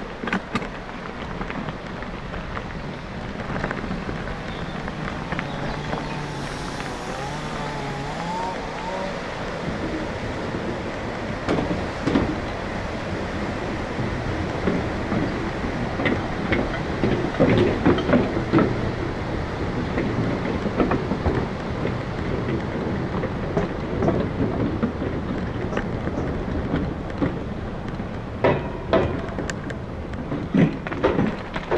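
Bicycle tyres rolling over a gravel path and then across a wooden-plank footbridge: a steady crunching rumble, with a run of clattering knocks over the planks about halfway through. A brief wavering high tone sounds a few seconds in.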